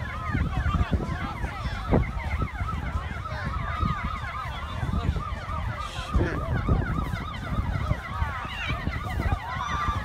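Several emergency vehicle sirens sounding over one another, their tones sweeping quickly up and down, over a low rumble of wind on the microphone.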